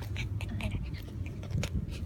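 A corgi puppy's soft mouthing and chewing sounds close to the microphone: a few faint small clicks over a low rumble.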